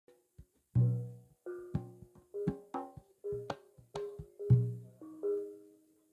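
Javanese gamelan playing: struck bronze kettle gongs and metallophones ringing out a run of notes, with deep strokes about a second in and again near the end. The phrase closes and its last notes die away just before the end.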